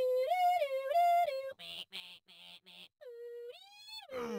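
Car alarm going off: a two-tone siren see-sawing between a higher and a lower pitch, then four short chirps, then a rising whoop near the end.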